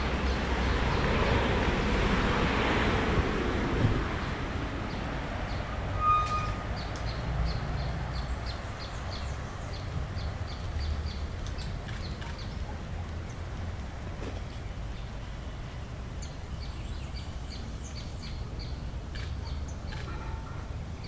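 Outdoor lakeside ambience: a steady low rumble, with a rushing noise that swells over the first few seconds and fades. A brief whistle-like tone comes about six seconds in, and faint high chirps repeat through the rest.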